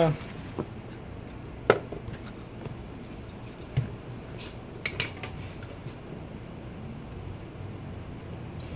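A handful of small, sharp metallic clicks from hand tools and a thin jumper wire being handled at an electronics bench, the sharpest about two seconds in and two more close together around five seconds, over a steady low hum.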